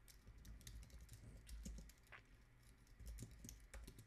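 Faint typing on a computer keyboard: an uneven run of light keystrokes entering a terminal command.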